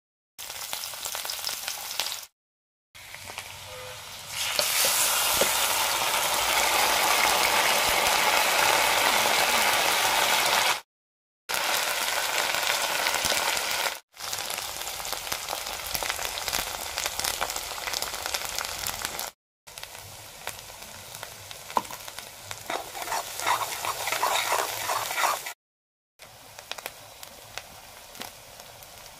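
Sliced onions sizzling as they fry in hot oil in an iron kadhai, loudest in a long stretch near the middle. The sizzle cuts off abruptly several times, and scattered crackles run through the later part.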